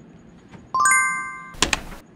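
Sound effect of an animated subscribe button: a bright chime of several quick rising notes that ring on together, followed near the end by a short burst of noise with a sharp click in it.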